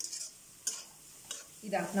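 A metal spatula scraping and stirring scrambled egg and vegetables as they fry in an aluminium kadai: several quick scrapes, about one every half second.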